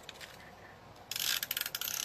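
A small handheld tape runner (adhesive dispenser) being drawn along a strip. It gives a quick run of dense ratcheting clicks that starts about a second in.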